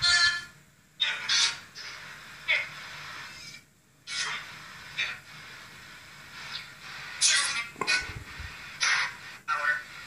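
Spirit box sweeping through radio stations: several short bursts of garbled voice fragments and static, with a steady hiss between them.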